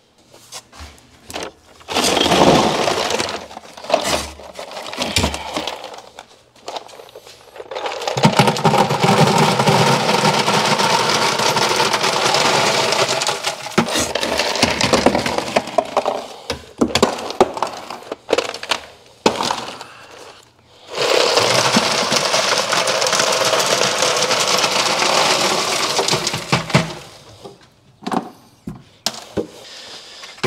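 Ice clattering and cracking as it is knocked out of homemade ice-maker containers and dumped into a bucket. It comes in three long runs, the middle one the longest, with short pauses between.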